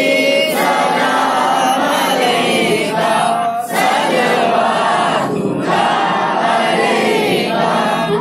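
Many voices chanting together in a devotional recitation at a Sufi shrine, loud and continuous, with a short break a little before the middle.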